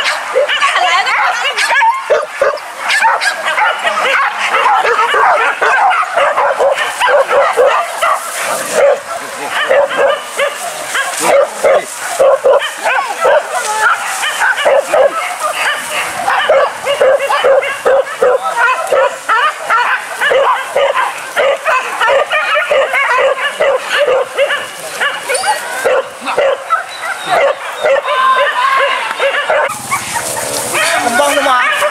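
A pack of leashed hunting dogs barking, yelping and whining together without a break, loud and continuous, many dogs overlapping at once; the sound of excited dogs straining at their leashes.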